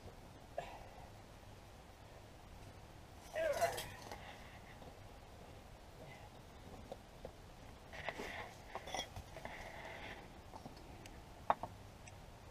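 Faint knocks and scrapes of bricks being set back into a brick clay stove, clustered about eight to nine and a half seconds in, with one sharp click near the end. A brief vocal sound from a man comes about three and a half seconds in.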